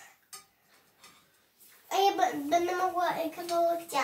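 A young child's high voice talking in a drawn-out, sing-song way for the last two seconds, after a near-quiet pause broken by one short click.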